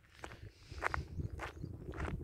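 Footsteps on a dirt path, a few soft steps heard over low wind noise on the microphone.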